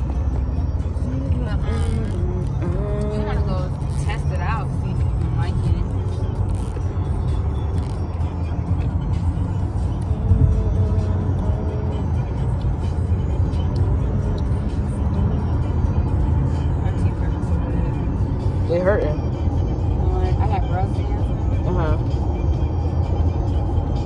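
Steady low rumble of a moving car heard from inside the cabin, with faint voices and music underneath it now and then.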